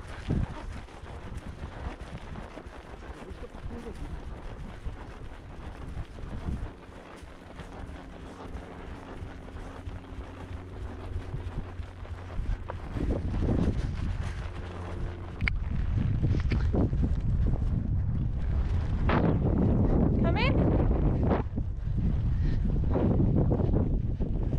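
Horse's hooves on grass under the rider, with wind buffeting the helmet camera's microphone; about two-thirds of the way through, the wind rumble becomes much louder as the horse picks up speed. A few short voice-like calls sound near the end.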